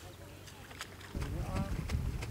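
Outdoor wind buffeting the microphone, a fluctuating low rumble that starts about halfway through. A brief faint voice comes just after it starts, and a few scattered clicks are heard before it.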